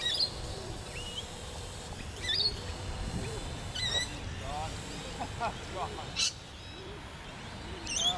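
Scattered short bird chirps over a steady outdoor background, with faint voices in the distance.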